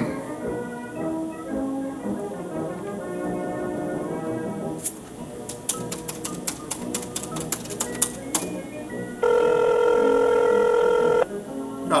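Soft background music, then a desk telephone's keypad buttons clicked in quick succession as a number is dialled. About nine seconds in, a steady telephone ringing tone sounds for about two seconds and cuts off: the ringback of the call going through.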